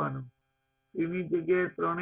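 A man's voice speaking in short phrases, with a pause of about half a second early on. A faint steady electrical hum runs underneath.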